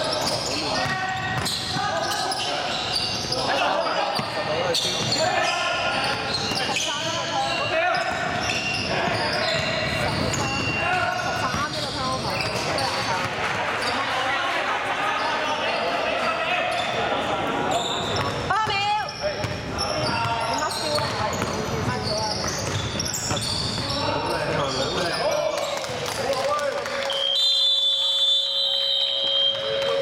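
Indoor basketball game sounds in a large echoing gym: players' shouts and calls mixed with a basketball bouncing on the hardwood floor. Near the end a long steady high-pitched signal tone sounds.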